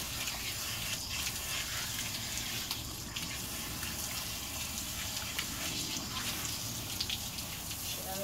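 Water spraying steadily from a garden-hose nozzle onto a dog's wet coat as it is rinsed off, a continuous even hiss of running water.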